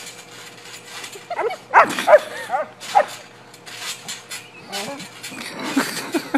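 A dog yipping and barking while bounced on a trampoline: a quick run of high yips about two seconds in, then lower, shorter barks near the end, over repeated thuds of the trampoline mat.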